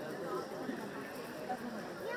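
Indistinct background chatter of several people talking at once, with no single clear voice.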